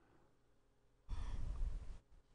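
A person's long breathy exhale, like a sigh, close to the microphone, starting about a second in and stopping abruptly after just under a second, with a low rumble of breath striking the mic.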